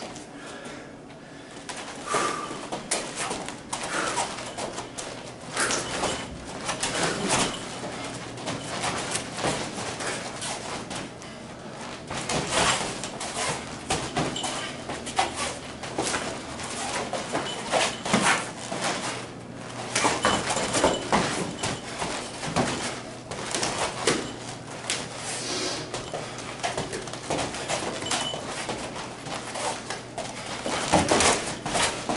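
Irregular scuffs, thuds and slaps of light-contact sparring: feet shuffling and stepping on foam mats, with light hand contact between the two fighters.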